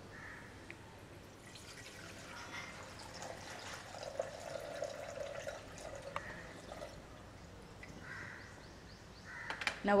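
Used, dirty water being poured off a metal dissecting tray. It is a faint, steady trickling and splashing that builds from about a second and a half in and tails off shortly before the end.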